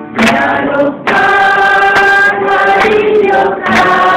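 A group of voices singing a slow Malay-language hymn to God together, holding long notes, with a short break between phrases about a second in.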